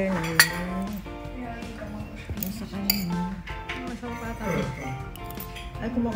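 A metal spoon and fork clinking against a ceramic plate, a few sharp clinks, over background music.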